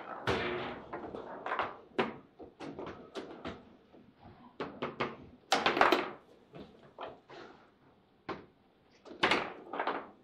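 Table football game in play: quick, irregular knocks and clacks as the ball is struck by the rod figures and bounces off the table walls, with louder flurries of hits about five and a half seconds in and again near the end.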